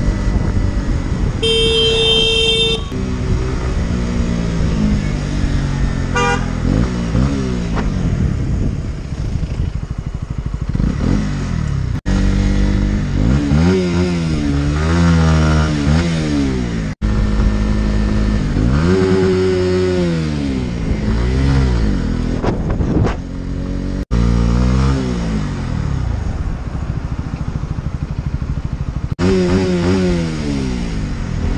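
Motorcycle engine pulling through the gears, its pitch climbing and then dropping at each shift, over wind rush. A horn sounds for about a second near the start. The sound cuts out briefly three times where the footage is edited.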